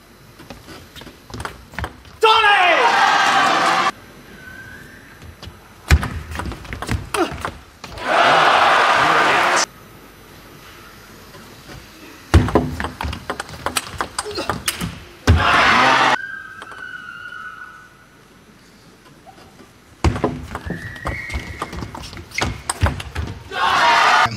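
Table tennis rallies: a celluloid-type ball clicking back and forth off bats and table in quick runs. Each point ends in a loud burst of crowd cheering and shouting lasting a second or two, four times over.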